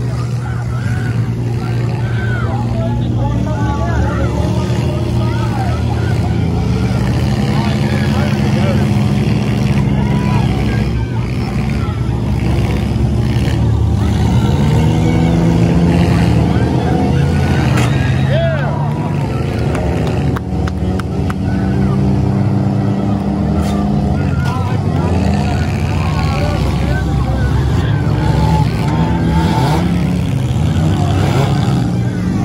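Several compact demolition-derby cars' engines running and revving hard, their pitch rising and falling as they accelerate and ram each other. Crashing hits sound now and then, mostly in the middle stretch, over the voices of the watching crowd.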